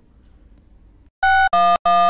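Three short, loud electronic telephone keypad beeps, a phone number being dialled, starting about a second in and about a third of a second apart; the first differs in pitch from the other two.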